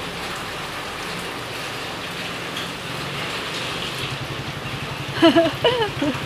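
Heavy rain falling steadily on floodwater and wet pavement, an even hiss. About four seconds in, a low, steadily pulsing engine hum joins it.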